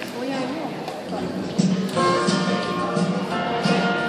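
Live music through a hall's PA system, a band's sound check, with steady held notes coming in about halfway through over the murmur of talk in the room.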